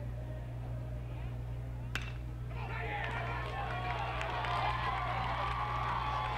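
A single sharp crack of a metal bat hitting a baseball about two seconds in, followed by crowd voices and cheering over a steady low hum.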